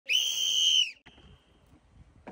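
A whistle blown once in a single steady, shrill blast of just under a second, with a fainter short tone after it: the start signal for a timed puzzle race.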